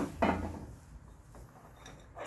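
A metal clank with a short ring about a quarter second in, then a couple of faint clicks: metal parts and tools being handled at a scooter's belt-drive pulley (variator) assembly during disassembly.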